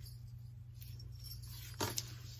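Quiet handling of a ribbon tassel on a metal key ring, with a short clink just before the end as it is laid on the wooden table, over a low steady hum.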